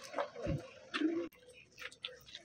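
Footsteps of a group walking on a dirt track, with scattered light ticks and a low thump about half a second in.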